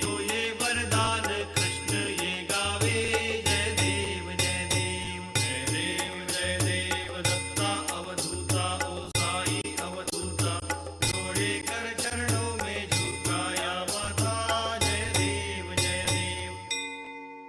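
Hindu devotional aarti song: voices chanting a hymn over a held drone, to a steady beat of percussion strikes about twice a second.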